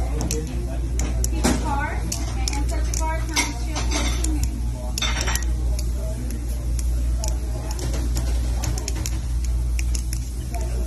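Balisong (butterfly knife) being flipped: its metal handles and latch clack and click in quick, irregular runs, with a dense cluster of clicks around the middle.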